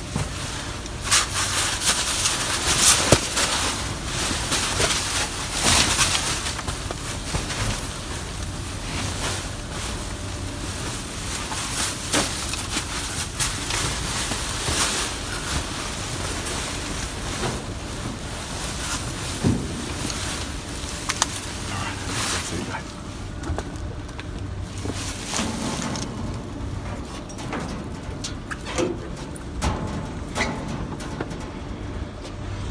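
Large clear plastic bags stuffed with goods rustling and crinkling as they are handled and shoved into a car, with irregular knocks and crackles, busiest in the first several seconds.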